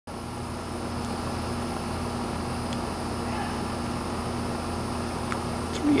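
Air-conditioning unit running steadily with a constant hum, loud enough to compete with a voice.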